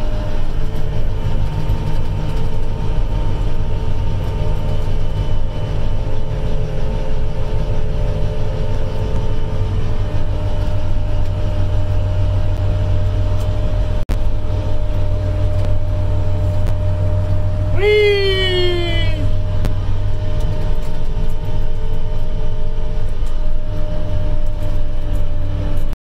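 Apache self-propelled crop sprayer heard from inside its cab while driving on the road: a steady low engine and drivetrain drone with a few steady hum tones above it. A little past the middle, a brief pitched sound falls in pitch over about a second.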